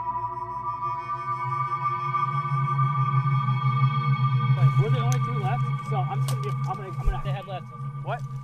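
Sustained ambient synthesizer music, a steady drone of held tones. Indistinct voices join about halfway through.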